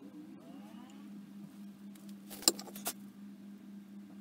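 Sharp clicks of broken lawnmower flywheel pieces knocking together as they are handled and fitted, a cluster about halfway through and one more half a second later, over a steady low hum.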